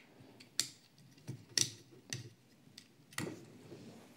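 Light clicks and ticks of a Hot Wheels 5 Alarm toy fire truck (plastic body, metal base) being handled in the fingers, its plastic ladder being worked: five or six sharp ticks, spaced irregularly. About three seconds in comes a duller knock as the truck is set down on the mat.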